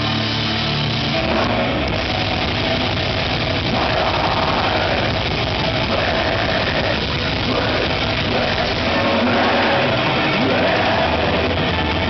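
Death metal band playing live, loud and unbroken: distorted electric guitars, bass and drums.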